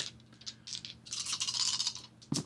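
A handful of plastic dice rattling as they are shaken in cupped hands, starting about half a second in and growing busier in the second half, before being rolled.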